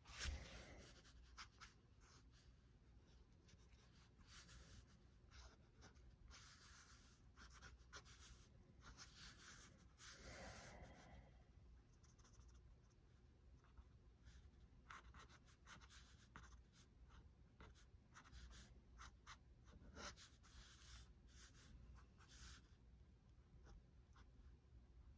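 Faint scratching of a fine-tipped pen on paper, in quick, irregular strokes as a drawing is sketched. One soft bump just after the start is the loudest sound.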